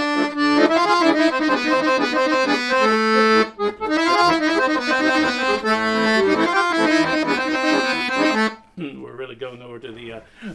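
Weltmeister piano accordion playing a melodic run built on the Hijaz scale starting on A, in a Romani-flavoured style over A minor. There is a brief break about three and a half seconds in. The playing stops about eight and a half seconds in, and a man's voice follows.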